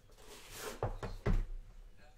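A cardboard trading-card box handled on a table: a short sliding rustle as the black inner box comes out of its white outer box, then two knocks as it is set down on the tabletop, the second the louder.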